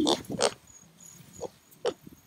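A kunekune piglet grunting at close range, about four short grunts, the loudest about half a second in and just before the end, as it noses at the wire fence.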